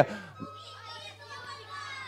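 Children in an audience calling out an answer together, a faint jumble of young voices heard from a distance over a steady low hum.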